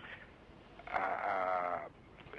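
A man's drawn-out, wavering hesitation vowel (a long "ehh") lasting about a second, starting about a second in.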